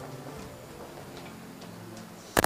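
Faint sustained low musical notes, soft background music, with a few faint scattered clicks.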